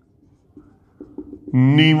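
Marker pen writing on a whiteboard: faint short strokes and ticks for about a second and a half, then a man's voice comes in near the end.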